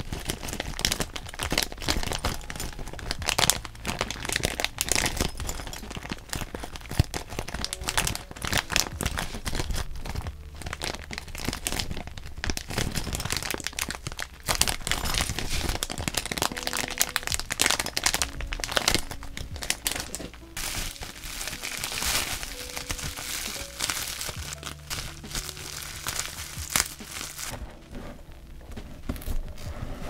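Clear plastic zip-lock bag crinkling and crackling in the hands as it is opened and handled, with soft lo-fi music underneath.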